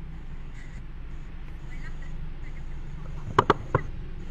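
Steady low hum inside a car cabin with its climate control running, then three short sharp clicks close together about three and a half seconds in.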